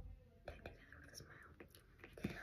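Near silence, with faint whispering and a couple of soft clicks about half a second in.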